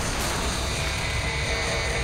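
Cartoon forest-fire sound effect, a steady low roar with hiss, mixed under dramatic music with held high notes.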